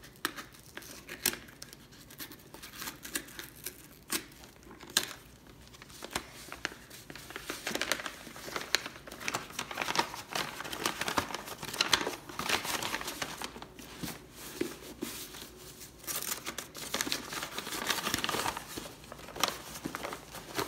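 Brown paper parcel wrapping being cut and torn open along its side, with irregular crinkling and sharp crackles of the paper that get busier about halfway through.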